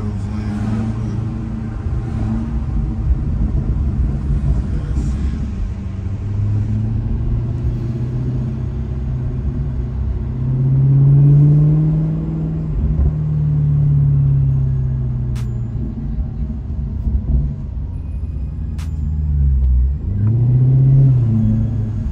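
Maserati GranTurismo engine and road rumble heard from inside the cabin while driving slowly. The revs rise and fall about halfway through and again near the end.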